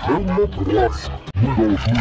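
A cartoon voice track warped by audio effects, its pitch bending up and down in a garbled, growl-like way, with a brief dropout about two-thirds of the way through.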